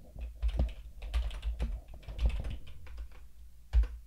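Typing on a computer keyboard: a run of uneven keystrokes, ending with one much louder keystroke near the end as the typed command is entered.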